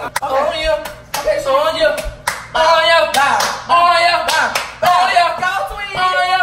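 Several people shouting and laughing excitedly in high voices, with a few sharp claps among them.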